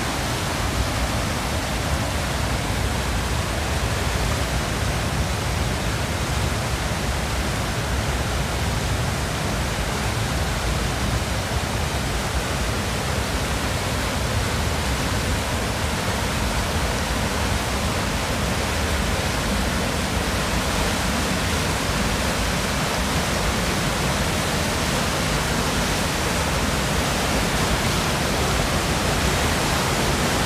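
Fast, muddy water rushing in a concrete canal and churning into a culvert mouth: a loud, steady, unbroken rush of turbulent water. It grows a little louder near the end, as the flow pours into the tunnel.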